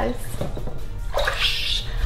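Bath water moving and sloshing in a filled tub, with a brief hissing noise about one and a half seconds in.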